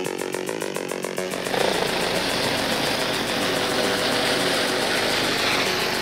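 Engine and rotor noise of a helicopter flying in overhead, beating steadily at first and then about a second and a half in becoming a louder, dense rushing.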